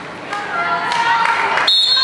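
Voices echoing in a sports hall, then near the end a short, high, steady referee's whistle blast, the signal that starts a dodgeball set.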